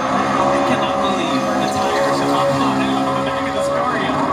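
NASCAR Xfinity Ford Mustang's V8 engine held at high revs in a victory burnout, rear tyres spinning in thick smoke. The engine note stays mostly steady with small rises and falls in pitch, and it is heard through a TV speaker.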